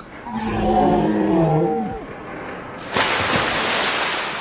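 A growling creature roar lasting under two seconds and dropping in pitch at the end. From about three seconds in there is a steady rushing hiss.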